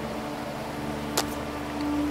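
A pause in speech filled by a steady low hum with a faint held tone, and one short click about a second in.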